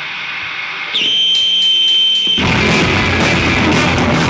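A single steady high-pitched squeal of guitar amplifier feedback sets in about a second in, over amp noise. Halfway through, the electric guitars, bass and drums come in together loud, starting a fast punk rock song.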